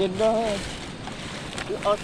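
Stream water running steadily over rocks, a continuous rushing hiss, with a man's voice speaking over it at the start and again near the end.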